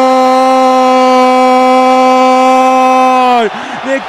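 Football commentator's long drawn-out 'gol' shout, held loud on one steady pitch, then dropping off about three and a half seconds in as rapid narration starts.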